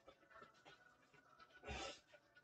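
Near silence: room tone, with one short, soft breath-like rush of noise near the end.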